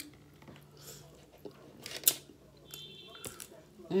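Close-miked mouth sounds of biting into and chewing a seasoned boiled shrimp: soft wet chewing with a few sharp lip and mouth smacks, the sharpest about two seconds in.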